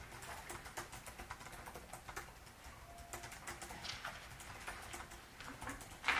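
Faint, quick, irregular clicks and taps over a low steady room hum.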